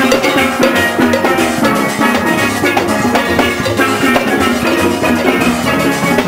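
A steelband playing loud and close: many steel pans struck with sticks in a fast, steady rhythm, backed by drums and percussion.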